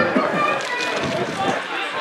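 Voices calling out and talking at an outdoor football match, from players on the pitch and spectators along the railing, over a steady murmur of the small crowd.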